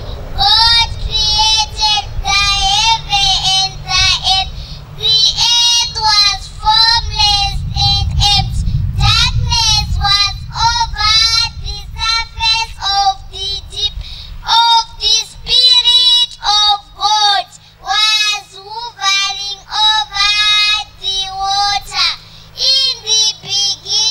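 A young girl singing solo into a microphone in a high, clear voice, in phrases with short breaks between them. A low rumble of background noise sits under the first two-thirds and then drops away.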